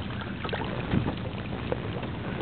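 Steady wind noise on the microphone in an open boat, with a few faint knocks.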